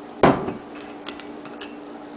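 A single loud knock of an object set down or struck on a countertop about a quarter second in, followed by a couple of light clicks, over a steady low hum.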